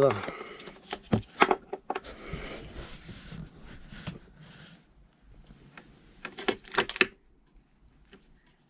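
Battery charger leads and their plastic connector ends being handled: several sharp clicks and knocks, loudest near the end, with rustling of the cables in between.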